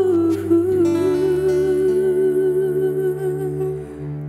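Closing bars of an Indonesian religious pop ballad: a woman's long hummed note with vibrato, held until just before the end, over soft sustained backing music, with a brief plucked note about half a second in.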